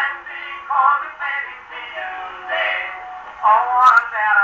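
An acoustic-era Edison Diamond Disc playing through a Victor III gramophone's brass horn: male voices singing with band accompaniment. The sound is thin and boxy, held to the middle range with no deep bass or high treble.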